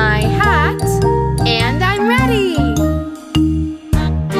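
Upbeat instrumental children's song music with steady bass notes, over which wavy gliding tones swoop up and down twice. The music dips briefly near the end, then a sharp click.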